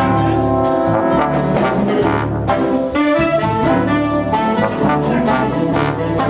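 A brass-led band, with trumpets and trombones, playing sustained chords, punctuated by several sharp accented attacks.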